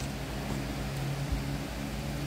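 Steady low electric hum of a running standing fan's motor, with one soft low thump a little past halfway.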